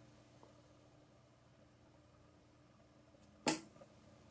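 Quiet room tone with a faint steady hum, broken about three and a half seconds in by one short spoken word.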